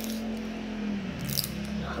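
Fingers picking at the outer layer of a bath-bomb ball, a few faint scratchy clicks, over a steady low hum.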